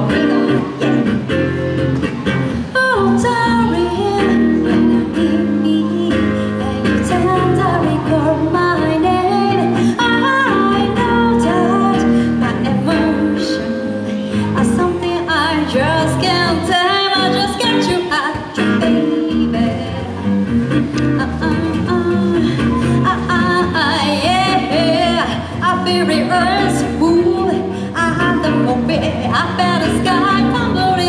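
A woman singing into a microphone, accompanied by an archtop guitar played through an amplifier, as a live duo heard over a PA system.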